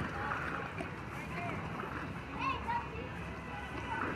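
Faint, distant children's voices calling out over a steady hiss of spraying and splashing pool water.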